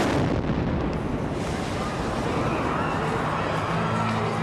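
A bomb explosion: one sudden loud blast right at the start, its noise and echo then hanging on steadily through the rest. It is a pressure-cooker bomb going off in a city street.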